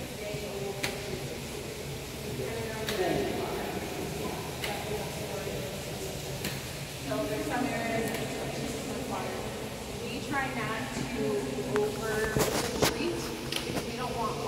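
Indistinct voices of several people talking over a steady low hum, with scattered sharp clicks and taps.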